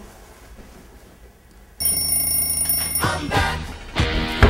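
An alarm clock starts ringing suddenly about two seconds in, a loud, steady high ringing after a quiet moment.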